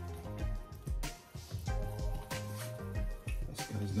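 Background music, with the wet squelch of thick cake batter being stirred with a wooden spatula in a plastic bowl.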